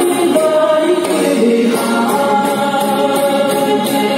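A woman singing a Chinese pop song live into a handheld microphone over a recorded backing track, both amplified through small street speakers; the melody moves continuously with no breaks.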